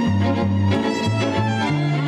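String quartet playing: violins bowing sustained melody lines over a cello bass line that moves in even, detached notes.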